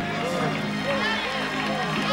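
Live gospel music: a held low chord sustained under a singer's soft ad-libbed vocals and voices from the audience.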